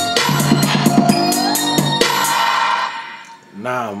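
Trap beat played back from Reason: a drum kit with kick, snare and evenly spaced hi-hat hits under sustained organ chords and a whistle lead. The playback stops about three seconds in and tails off.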